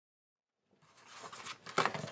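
Dead silence, then, under a second in, paper rustling and light taps as cardstock strips are handled on a table.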